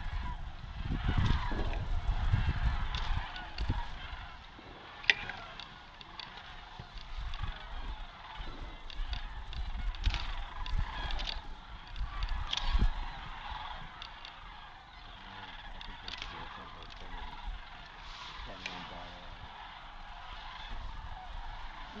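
Massed chorus of sandhill cranes: many birds calling at once in a continuous overlapping din. A low rumble on the microphone is loudest in the first few seconds, and there is one sharp click about five seconds in.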